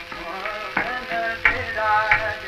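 Old archival recording of Hindustani classical music in raag Tilak Kamod, with sharply struck pitched notes about every 0.7 s over a held drone tone and a steady hiss of surface noise.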